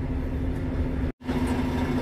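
Heavy diesel truck engine running steadily, a low rumble with a constant hum, heard from inside the cab. The sound drops out completely for an instant about a second in.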